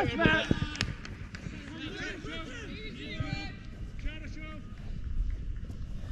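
Players calling and shouting to each other on a football pitch, the voices distant and overlapping, with one short sharp knock a little under a second in.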